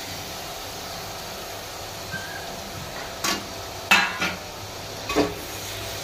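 Onions and chopped tomatoes frying in oil in a metal pot with a steady sizzle, broken by three sharp clinks of a metal slotted spoon against the pot as they are stirred, in the second half.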